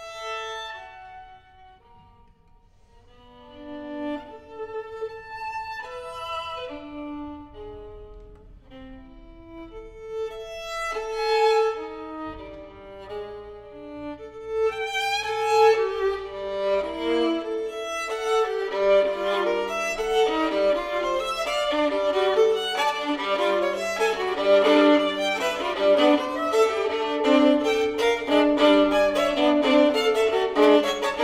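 Solo violin playing: sparse, separate bowed notes at first, then from about halfway in a louder, fast, dense passage of many quick notes.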